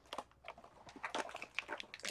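A few short, faint clicks and rustles of a Disney Doorables blind pack being opened through its little cardboard-and-plastic door.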